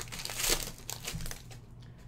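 Foil wrapper of a trading-card pack crinkling as it is handled and the cards are pulled out. Loudest in the first half second, then it fades to faint rustling.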